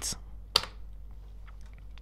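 A single sharp computer keyboard key click about half a second in, with a couple of fainter ticks, over a low steady background hum.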